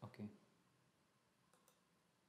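A brief spoken 'okay', then near silence with a faint click from a computer mouse or key, pressed and released, about a second and a half in.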